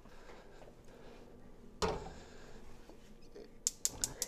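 A metal pot of water set down on a gas stove's grate with one sharp knock about two seconds in, then a few quick sharp ticks near the end as the gas burner is lit.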